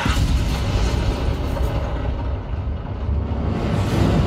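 A film soundtrack played through a 7.2.4 Dolby Atmos home-cinema speaker system and picked up in the room: dramatic score music over a heavy, deep rumble, with a sudden burst at the start as an explosion fills the screen.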